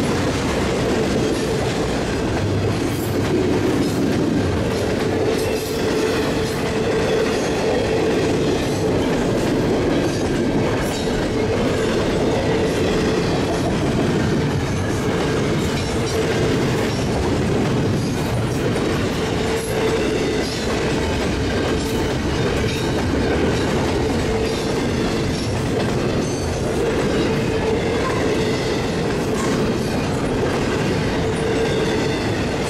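Double-stack intermodal freight cars rolling past: a steady rumble of steel wheels on rail, with scattered clicks as wheels cross rail joints and a steady ringing tone from the wheels and rails.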